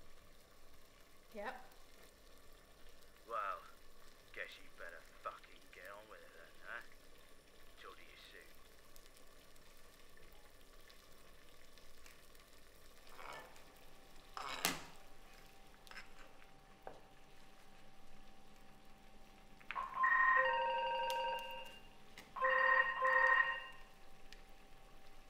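An electronic telephone ringer goes off twice near the end, two warbling rings of about a second and a half each with a short gap between. Before that there is only faint, broken speech and a single sharp click.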